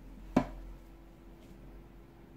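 A single sharp click about half a second in, then a faint steady hum of room tone.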